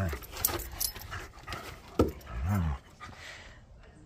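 Dogs play-fighting: short, low grumbling vocalisations from a dog, with the loudest pair about two seconds in.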